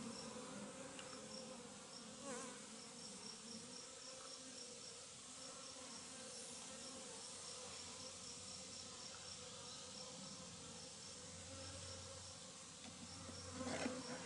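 Honeybees flying around an opened top-bar hive, a faint steady hum. Many bees are in the air because the hive has no entrance open yet.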